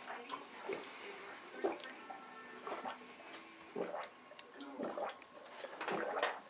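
A man gulping water from a glass, swallowing about once a second, with faint voices in the background.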